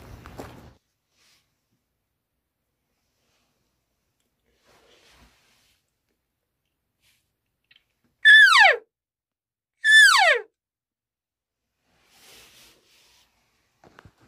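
Elk call made by a hunter, sounded twice about a second and a half apart, each a short falling whine that drops from high to low.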